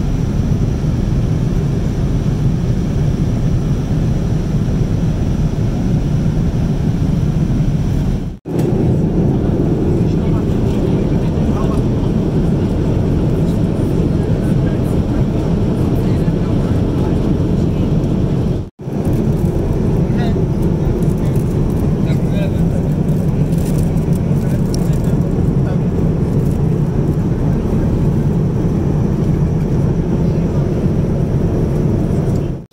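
Steady cabin noise of a Boeing 787-9 in flight, a loud, even rumble of engines and airflow heard inside the economy cabin. It cuts out briefly twice.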